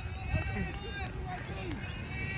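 Faint, distant men's voices calling out across an open cricket ground, over a steady low rumble.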